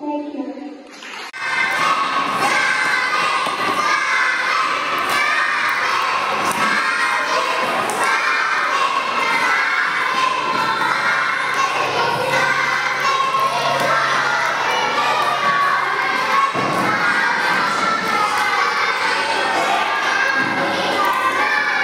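A child's singing cuts off about a second in. A crowd of young children then shouts and cheers steadily and loudly, many voices at once.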